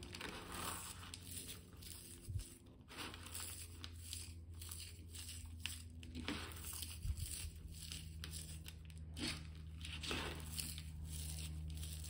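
Crisp, golden deep-fried onion slices being crushed by hand on a plate: irregular dry crackling and crunching throughout. The onions crackle this way because they were fried well and have cooled. A low steady hum runs underneath.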